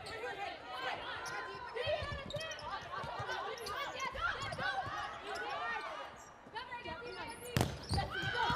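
Volleyball rally on an indoor court: players' calls and crowd voices over short ball contacts, with one sharp, loud smack of a hand hitting the ball near the end.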